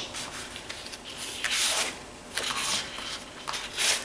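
Sheets of patterned scrapbook paper sliding and rustling against each other and across a wooden tabletop as they are shuffled, in a few short swishes.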